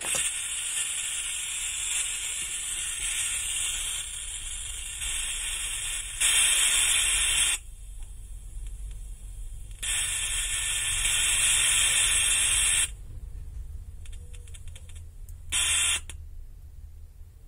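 Loud static hiss from a small loudspeaker driven by a Bluetooth audio module, cutting out and back in abruptly several times, with a short final burst.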